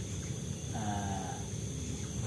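A faint drawn-out moaning call about a second in, over a steady low hum.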